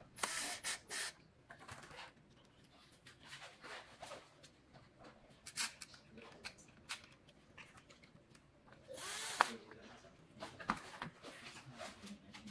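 Parts and hand tools being handled during assembly of an electric unicycle: scattered clicks and rattles with short bursts of rustling noise. The longest burst is about half a second long, about nine seconds in.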